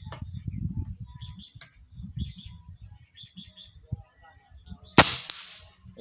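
A single air rifle shot about five seconds in, sharp and short with a brief ringing tail; it hits the hanging target, making five hits out of six. Crickets shrill steadily throughout.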